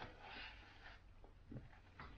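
Near silence with faint crinkling of a paper napkin being handled, and a soft knock about one and a half seconds in.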